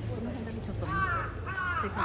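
Crow cawing twice in quick succession, harsh calls about a second in.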